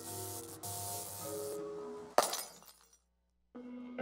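Station-ident music with held notes, cut off about two seconds in by a sudden loud crash that rings and fades away; after a short silence, new music begins near the end.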